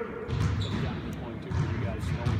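Basketballs bouncing on a gym court: two dull thumps about a second apart, with voices in the background.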